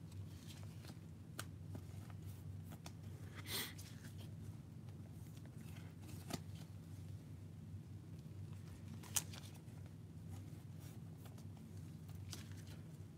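Quiet handling noises from trading cards being handled: a brief rustle about three and a half seconds in and a few light clicks, the sharpest about nine seconds in, over a steady low hum.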